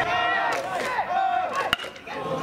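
Many voices shouting and chanting together, the chatter and cheering of a high school baseball game. About three-quarters of the way in, a single sharp ping as a metal bat strikes the ball for a hit.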